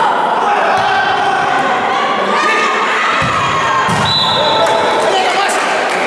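Futsal ball bouncing with a few thuds on the hard court floor of an indoor hall, about a second in and twice more around three to four seconds in, under the steady shouting and chatter of spectators.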